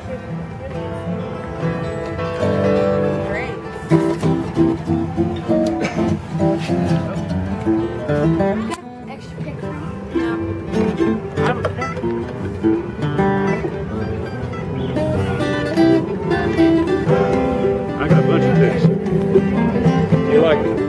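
Acoustic guitar and five-string banjo playing a bluegrass tune together, with plucked and strummed notes throughout.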